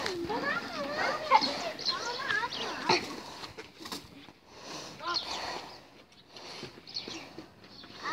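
Boys' voices talking and calling out as they play, clearest in the first three seconds and fainter and more scattered after.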